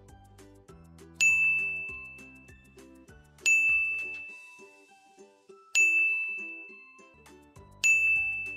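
A bright ding sound effect struck four times, about two seconds apart, each ringing out and fading, over soft background music. The dings pace a reading drill, each one cueing the child to read the next syllable aloud.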